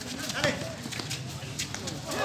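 A basketball bouncing and players' shoes hitting an outdoor concrete court, heard as a few irregular sharp knocks, with players' voices.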